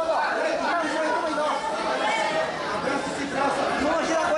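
Several voices talking and calling out over one another: the spectators and coaches around a grappling mat.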